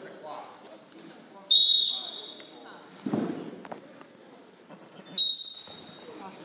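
A referee's whistle blown twice, each a sharp, shrill blast of about a second, the second about three and a half seconds after the first, over voices.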